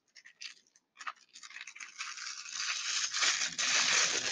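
Clear plastic wrapping being pulled and peeled open by hand, crinkling. A few small clicks at first, then crinkling that grows louder from about a second and a half in.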